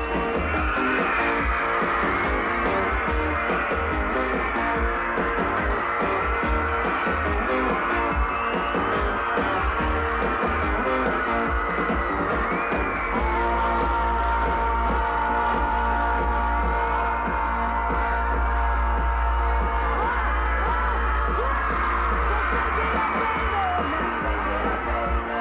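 Loud rock and roll music: a band with guitars and singing, playing without a break. A long held note sounds about halfway through.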